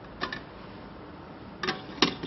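Two light clicks about a second and a half apart, over a faint steady hiss, as a small weighing bottle is lifted off the metal pan of an electronic balance and handled at the bench.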